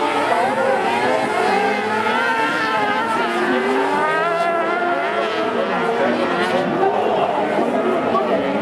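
Several carcross buggies' motorcycle engines revving high while racing together. Their notes overlap, rising and falling as they change gear.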